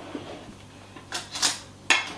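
Kitchen handling sounds as a metal spoon is fetched: a short rattling clatter about a second in, then a single sharp click near the end.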